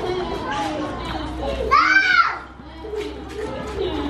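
Children playing and chattering, with one child's loud, high squeal about two seconds in that rises and then falls in pitch.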